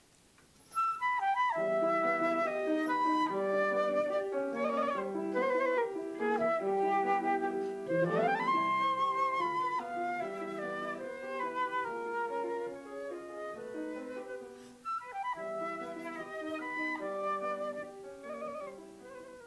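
A flute playing a classical melody, starting about a second in, with one quick rising slide in pitch about eight seconds in.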